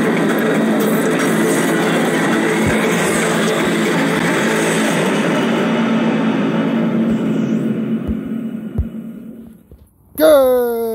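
Intro soundtrack of a logo animation: loud, dense music and sound effects that fade out over the last three seconds.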